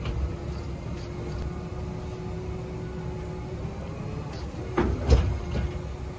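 Low engine rumble and a faint steady whine as the hydraulic remote-control boom of a manure tanker swings into place. About five seconds in come a few loud metal clunks.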